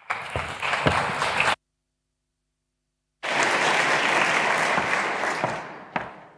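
Audience applause that cuts out abruptly for about a second and a half of dead silence, then resumes and fades away toward the end.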